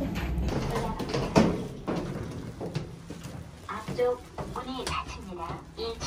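Low, indistinct voices with some handling noise, and a single sharp knock about a second and a half in.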